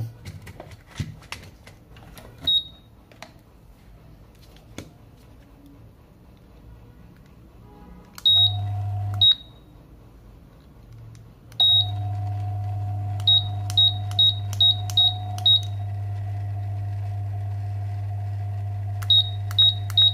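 The fan control board's buzzer gives short high beeps each time a remote-control command is received, showing that the repaired board and remote now work. One beep switches on a steady low hum of the fan running, the next stops it, and another restarts it. Quick runs of six and then three beeps follow as more buttons are pressed.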